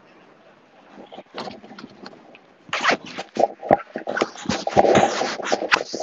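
Crackling, scraping handling noise on an earbud microphone as it is rubbed and knocked about. It comes in irregular scratches and knocks that grow much louder about three seconds in.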